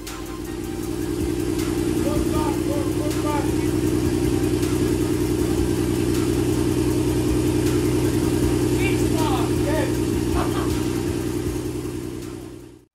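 Nissan Skyline R32 GT-R's RB26DETT twin-turbo straight-six, rebuilt with forged internals, idling steadily. It fades in over the first couple of seconds and fades out near the end.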